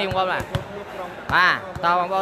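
A volleyball being struck, a quick run of sharp knocks about half a second in, followed by a brief voice.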